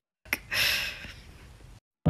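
A woman's short, breathy exhale, like a gasp or half-laugh, fading over about half a second, just after a single sharp click.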